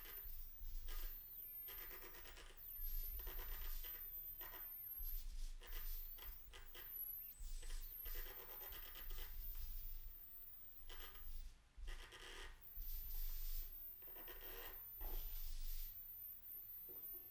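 Quiet scratching and rubbing noises from an experimental music ensemble, coming in irregular bursts of a second or two, with a low hum that comes and goes.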